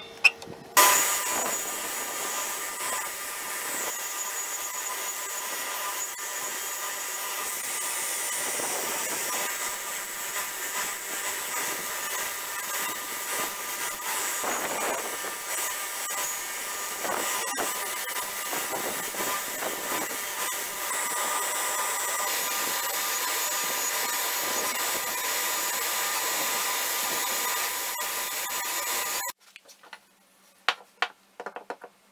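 Electric pedestal belt grinder starting up about a second in and running steadily with a whine, its abrasive belt sanding an ash-wood hammer handle; the grinding noise swells each time the wood is pressed against the belt. The sound cuts off abruptly just before the end.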